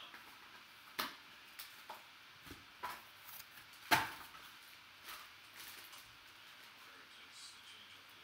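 Hands opening a cardboard trading-card box and pulling out a foil-wrapped pack: scattered rustles and light clicks, with two sharper clicks, one about a second in and one about four seconds in.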